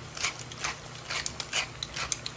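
Green beans in a cast-iron pan being seasoned by hand: short scratchy crackles and rustles, a few a second, from the seasoning landing on the beans and the hand working over them.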